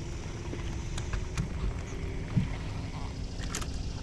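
Bass boat on the water: a low steady rumble of wind and water, with the faint hum of the bow-mounted electric trolling motor easing off about halfway, and a few light clicks.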